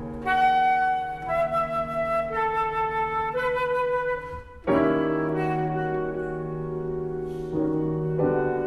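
Concert flute and grand piano playing classical music. The flute plays a melody that moves note by note over held piano chords, breaks off briefly about four and a half seconds in, then returns with longer held notes over a new piano chord.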